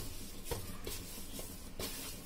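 A hand kneading crumbly dough in a steel bowl: faint rubbing with a few light taps against the metal.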